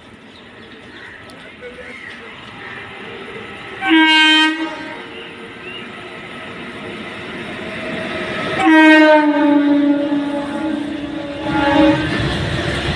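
Locomotive horn of a long freight train: a short blast about four seconds in, then a long blast from about nine seconds that drops slightly in pitch, and another brief one at the end. Under the horn, the rumble of the approaching train grows steadily louder until its wagons are rolling past close below.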